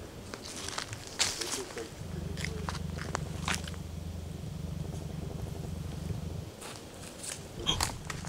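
Footsteps crunching and rustling through dry fallen leaves, in short irregular strokes. A low steady rumble joins about two seconds in and stops about a second and a half before the end.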